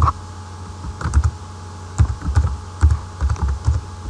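Computer keyboard typing: short irregular runs of keystrokes, busiest between about two and four seconds in, over a low steady hum.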